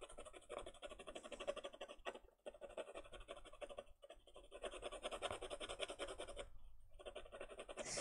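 Faber-Castell Albrecht Dürer Magnus thick-lead watercolour pencil scratching rapidly back and forth over paper as a large area is shaded in, faint, with short breaks about two, four and six and a half seconds in.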